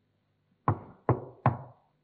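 Three sharp knocks on a desk, about half a second apart, struck to open a session.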